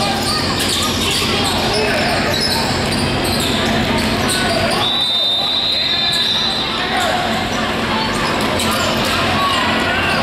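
Basketballs bouncing on a hardwood gym floor during play, mixed with the chatter of players and spectators, echoing in a large hall. A steady high tone sounds from about five seconds in for nearly two seconds.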